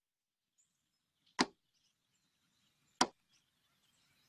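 Two short, sharp editing sound effects about a second and a half apart, with near silence between them.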